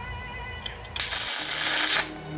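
Arc welding on a steel motorcycle frame tube: a loud, dense crackling hiss starts suddenly about a second in, after a few light handling clicks.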